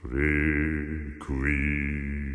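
Music from a requiem's Introitus: a deep, sustained chanted tone with a bright ringing overtone above it. It enters abruptly, drops out briefly just after a second in, and comes back.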